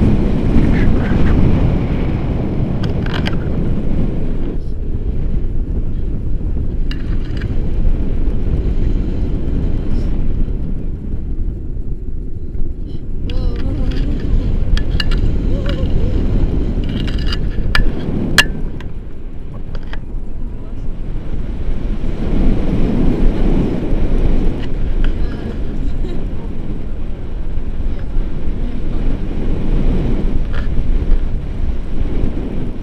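Wind buffeting a selfie-stick camera's microphone in flight: a loud, uneven low rumble that swells and dips, with scattered small clicks.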